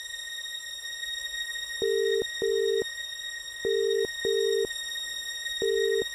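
Telephone ringback tone over a mobile phone as an outgoing call rings: short double beeps repeating about every two seconds, starting about two seconds in, over a steady high-pitched hum.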